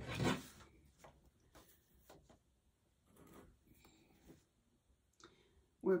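A clear acrylic quilting ruler is handled on fabric strips over a cutting mat. There is a sharper sliding or lifting noise right at the start, then faint rubbing, rustling and light ticks as the ruler is moved off the fabric.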